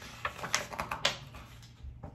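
Paper page of a picture book being turned and handled: a quick flurry of crackling rustles and small clicks, loudest about half a second in and again around one second.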